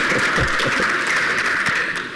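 Audience clapping steadily, a dense even patter.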